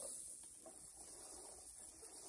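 Fine dry sand trickling inside a sand-toy box, running through the hopper onto the paddle wheel: a faint, steady rustle.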